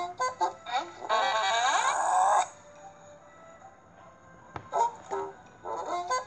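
Background music and sound effects from a children's animated Bible story app. The loudest part is a dense, pitched burst starting about a second in and lasting just over a second.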